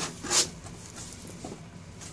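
A short scraping rustle of the cardboard shipping box and its flaps being handled, loudest just under half a second in, then fainter rubbing.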